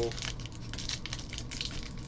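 Foil wrapper of a trading-card pack crinkling in the hands, with a run of irregular crackles as the pack is worked open.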